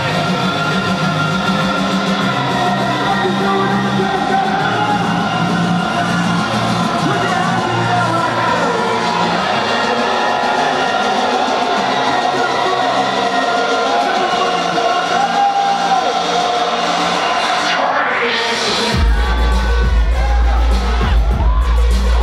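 Electronic dance music from a live DJ set, played loud over a festival sound system: sustained synth melody over a pulsing bass line, then a rising whoosh builds into a heavy bass drop about three seconds before the end.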